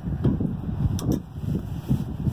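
Wrenches turning the winding bolt of a mobile home tie-down anchor's tension head, with two sharp metal clicks about a second in, over a low rumble of wind on the microphone.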